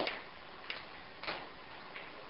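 A few soft, sharp clicks, about two-thirds of a second apart, over a steady low hiss.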